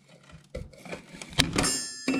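WorkPro cordless 3/8-inch drive ratchet on a long extension, working a bolt on a mower deck. A sharp crack comes about one and a half seconds in as the bolt breaks loose, followed by a short high whine from the ratchet's motor spinning.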